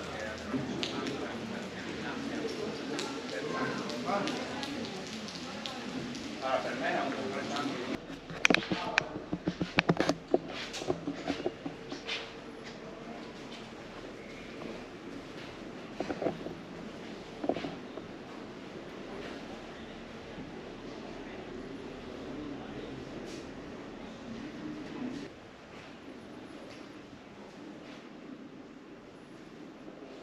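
Indistinct voices of people talking. A run of sharp clicks and knocks follows, about a third of the way in, and then a quieter, even background.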